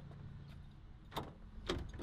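Rear cargo door of a 2010 Ford Transit Connect van being swung open, with two light clicks, one about a second in and one near the end.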